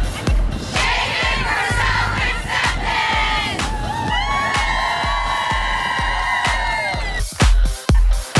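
A group of people cheering and shouting together, swelling into one long held shout that cuts off about seven seconds in, over pop music with a steady beat.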